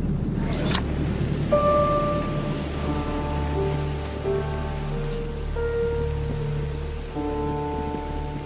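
Background music of held notes over a steady low drone, with a brief swish about a second in.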